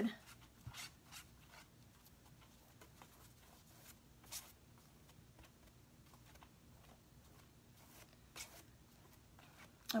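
Faint, scattered soft strokes of a paintbrush pressing a glue-wet paper napkin down onto a clipboard, a few brief brushes and dabs over a low steady room hum, the clearest about four seconds in.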